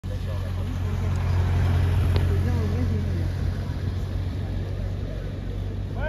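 Steady low drone of an idling engine, with faint talking in the background and a single sharp click about two seconds in.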